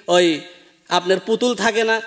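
Speech only: a man preaching in Bangla, with a brief pause about half a second in.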